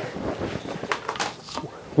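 Light rubbing and a few faint knocks of plastic as the sand-filled top section of a plastic-tube battery containment case is pulled off its bottom half.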